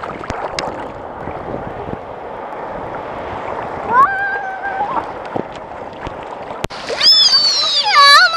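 Sea water sloshing and splashing around a camera held at the surface, with a child's short high call about halfway through and a loud, high-pitched squeal near the end.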